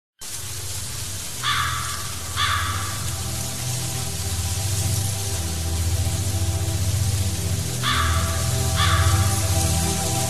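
Opening of an atmospheric black metal track: low droning music over a steady hiss, with two pairs of harsh bird caws, one pair about a second and a half in and another near the end.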